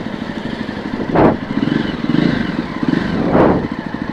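Jawa Perak's 334 cc single-cylinder engine running at a steady rapid firing beat, swelling briefly twice.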